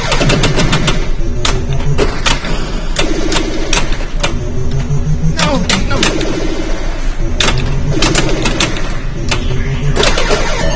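Gottlieb Black Hole pinball machine in play: rapid clicks and knocks of the ball, flippers and solenoids, with the machine's electronic sound effects, falling sweeps and short buzzing pulsed tones.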